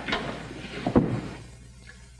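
A wooden office door being opened as several people move toward it, with a sharp knock about a second in, like the latch or the door striking.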